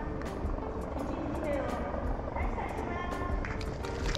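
Public-address announcement over the venue's loudspeakers, with music, heard faintly and at a distance over the murmur of a waiting crowd: the announcement that the hall is opening.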